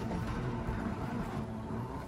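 Airport terminal ambience: a steady, noisy mix of travellers and luggage moving onto an escalator, with faint background music.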